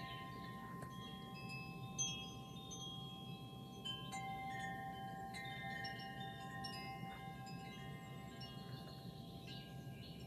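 Wind chimes ringing softly: many overlapping, long-held tones at different pitches, over a low steady hum.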